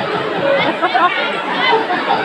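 People talking, several voices overlapping in continuous chatter.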